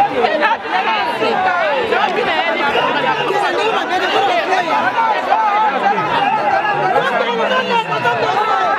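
A close, packed crowd of many voices talking and calling out over each other at once, with no single voice standing out, steady throughout.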